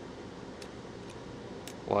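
Two faint small clicks over a steady room hum, from fingers handling a key fob's plastic case and metal battery clip while pushing a folded paper wedge in behind the clip to tighten its grip on the battery.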